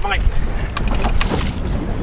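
Wind buffeting the microphone aboard a small boat on open sea, a steady rough rumble with a few sharp clicks and a brief hiss about a second in.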